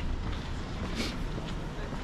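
City street ambience: a steady low rumble with faint voices of passers-by and a short sharp sound about a second in.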